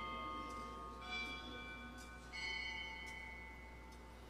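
A bell rung at the elevation of the host right after the words of consecration: clear ringing strikes, a new one about a second in and another about two and a half seconds in, each left to ring out and fade.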